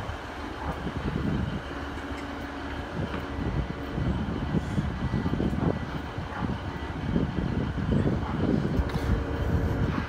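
A diesel multiple unit train (Class 150 coupled with a Class 156) pulling away from the platform close by. Its engines and wheels make a steady low rumble that grows a little louder as the carriages roll past.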